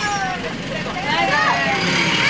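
Vehicle engine and road noise heard inside the cabin, steady and low, with high children's voices calling over it.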